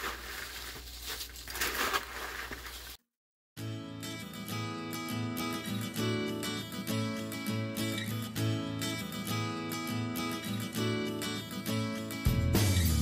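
A slotted spoon stirring caramel-coated pretzels and snack mix in a large bowl, a rustling scrape for about three seconds. Then the sound cuts out briefly and background music with a steady beat plays for the rest.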